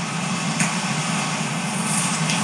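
Steady hiss over a low hum, with one faint tick about a third of the way in: the background noise floor of the recording.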